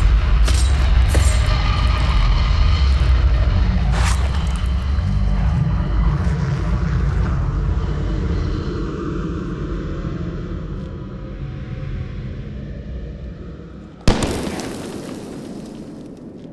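Battle sound effects: a deep rumble of explosions with a few sharp cracks of gunfire, slowly fading, then a single loud gunshot about two seconds before the end.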